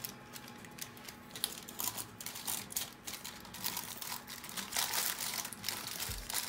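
Aluminium foil lining a baking dish crinkling and rustling in irregular bursts as hands rub seasoning into a raw whole chicken.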